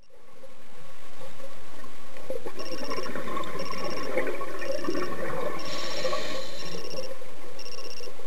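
Scuba diver breathing through a regulator underwater, an exhalation of bubbles crackling for several seconds, while a short electronic beep sounds about once a second.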